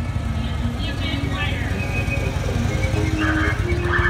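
Large touring motorcycles passing slowly, their engines running low and steady with a fast pulse. Music and voices sound over the engines.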